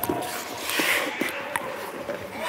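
Ice skates scraping on rink ice, with a few sharp knocks.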